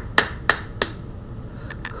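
Finger snaps, about three a second: three crisp snaps in the first second, then a faint one near the end.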